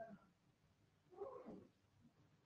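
Near silence, with one faint, short vocal sound a little past halfway through that falls in pitch.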